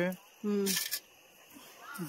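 People's voices: the end of a spoken phrase, one short syllable about half a second in, then a brief hiss, followed by a quiet pause.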